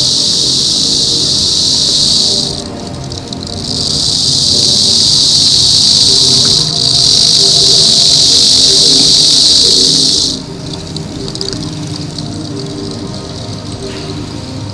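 Loud, steady, high-pitched insect-like buzz, like a cicada chorus, that cuts out about two and a half seconds in, returns a second later and stops for good about ten seconds in. Soft background music runs underneath.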